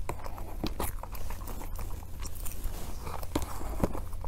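Close-miked eating sounds: a person chewing a soft, creamy cake, with many small irregular wet mouth clicks. A metal spoon scoops from the tray.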